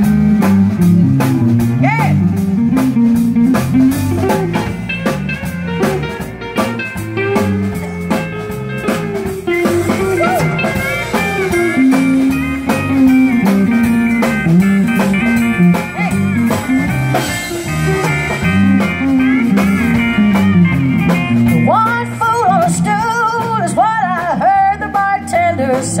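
A live country band plays an instrumental break with electric guitar, bass guitar and drums. Bending lead lines rise and fall above the band, most plainly near the end.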